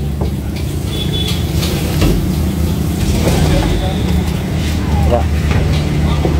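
Bus engine idling: a steady low hum, with faint voices in the background.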